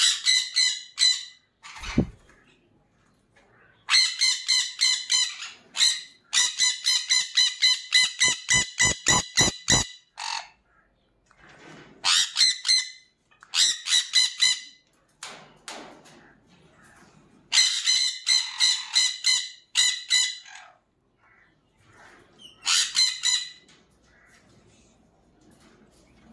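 Sun conures screeching: loud, harsh, shrill calls given about five a second in repeated volleys, the longest lasting several seconds, with short pauses between them.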